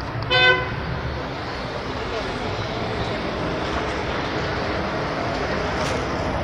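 A single short vehicle horn toot about half a second in, over steady street noise of crowd chatter and traffic.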